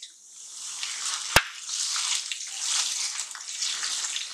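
Wet onion paste going into hot oil in a kadhai and sizzling, the hiss building up in the first half second and holding steady as it is stirred. About a second and a half in, a single sharp clack of the spatula striking the pan.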